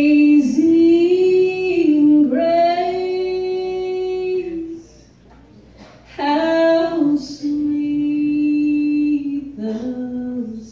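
A woman singing a slow gospel song solo, holding long notes. Her voice breaks off for about a second near the middle, then she sings on.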